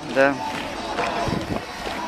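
Outdoor ambience of a busy town square: distant voices of a crowd, with music playing faintly in the background.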